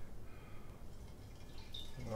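Faint trickling and dripping of mead running through a siphon tube into a glass jug, the source jug drained nearly to the bottom.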